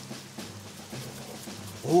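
Soft, steady rain-like hiss of hands rubbed together to make the sound of rain, over a quiet music bed with a low held tone.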